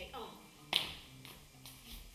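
One sharp snap, like fingers snapping, about three-quarters of a second in, after a brief vocal sound at the start, with a few faint ticks later.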